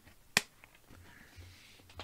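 A single sharp click about a third of a second in, then faint rustling as a mediabook with a disc tray is handled and its pages turned.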